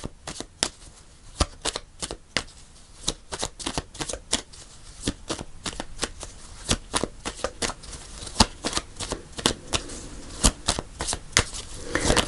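A deck of tarot cards shuffled by hand: a steady run of short card snaps and flicks, about four a second.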